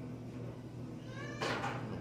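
A steady low hum, then about one and a half seconds in a loud, high-pitched human vocal exclamation that rises in pitch and runs on into speech.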